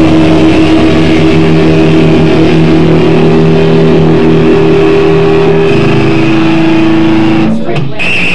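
Distorted electric guitars hold one loud chord that rings out for several seconds as a rock song ends, then cut off sharply near the end.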